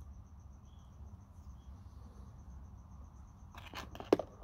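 Faint cricket chirping in a rapid, even pulse over a low background rumble, with a few light clicks near the end.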